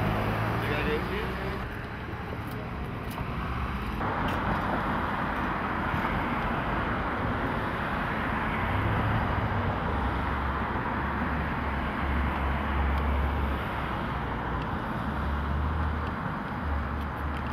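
Steady city street noise: a wash of traffic with low rumble and indistinct voices. The sound changes abruptly about four seconds in.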